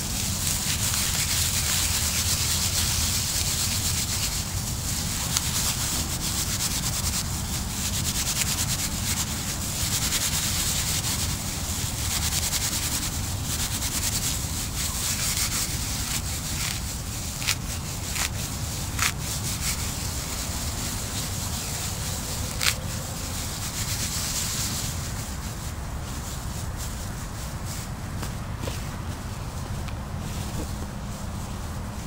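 Dry broom sedge grass rubbed and twisted between the hands, a steady rustling hiss as the fibers break down into fine tinder. A few sharp clicks come in the second half.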